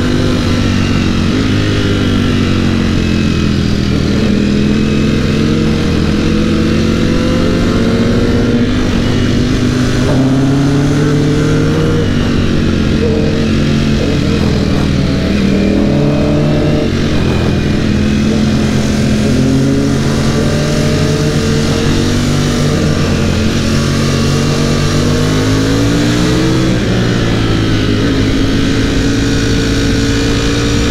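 Ducati Panigale V4's V4 engine heard from onboard, pulling up through the revs and dropping back again and again as it accelerates, upshifts and eases off for bends.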